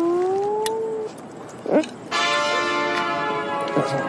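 A person's drawn-out humming "mmm" sounds while tasting food: a short one rising in pitch, then, after a pause, a longer one held on one steady note.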